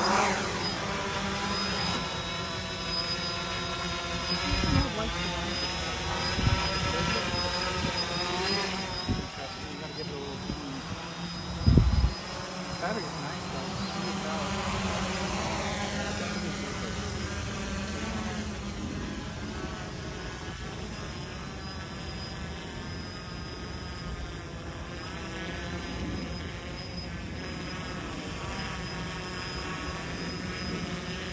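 Quadcopter drone's motors and propellers whining while it hovers and flies overhead, the pitch drifting up and down as the motors adjust thrust to hold it steady. A few thumps stand out, the loudest about twelve seconds in.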